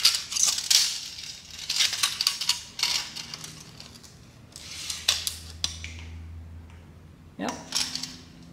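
Steel tape measure blade rattling and clicking against the bead roller's metal frame as it is stretched out and handled. The clicks come in clusters with quieter gaps between.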